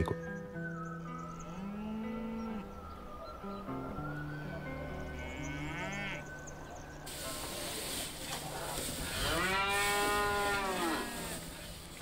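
Limousin cattle mooing. The loudest is one long moo about nine seconds in that rises and falls in pitch, with fainter moos earlier over soft music of sustained notes. A rustling barn backdrop comes in about halfway.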